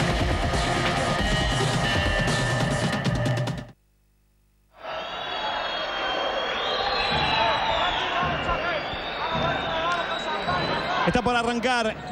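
Television station ident music that cuts off abruptly about four seconds in. About a second of silence follows, then the steady noise of a basketball arena crowd.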